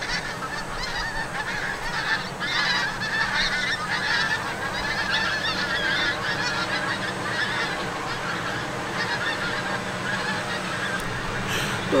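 A large flock of geese flying overhead, many birds honking at once in a steady, overlapping chorus.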